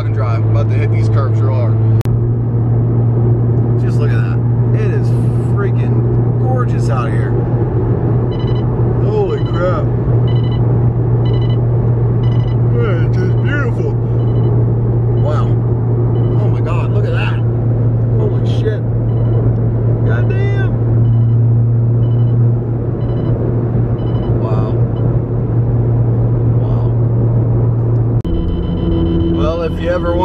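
Steady low drone of a car cruising at highway speed, heard inside the cabin of a Mk7 Volkswagen Golf R with its turbocharged four-cylinder engine, with voices over it.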